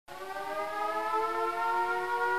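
Air-raid siren winding up: a chord of several tones slowly rising in pitch and growing louder.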